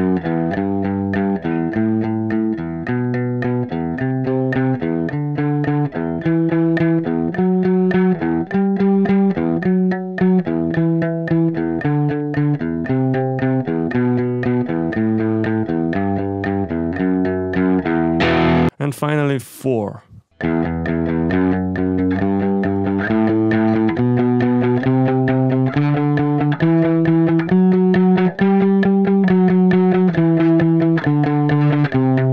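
Electric guitar playing an E minor scale in a three-notes-per-string pattern with alternate picking, each note picked several times in quick succession as the line steps up the neck. About two-thirds of the way through there is a brief swooping slide in pitch and a short break before the picking resumes.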